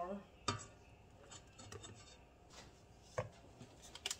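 Flour being tipped from a measuring cup into a stainless steel stand-mixer bowl: a sharp knock of the cup against the bowl about half a second in, faint handling sounds, and another knock a little after three seconds.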